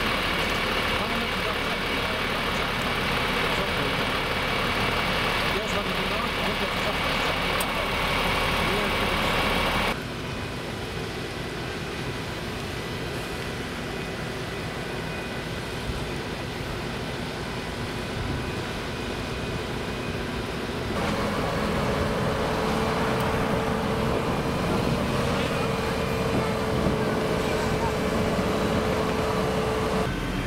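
Fire engine's engine and pump running steadily, with water spraying from the hoses. The sound changes abruptly about ten seconds in and again about twenty seconds in, and a low steady hum comes through in the last part.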